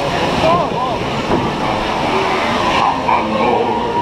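Indistinct voices over a steady rushing background noise inside the dark indoor section of a log flume ride.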